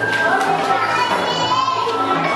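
Young children's voices chattering and calling over one another, with music in the background. A high, wavering voice stands out in the second half.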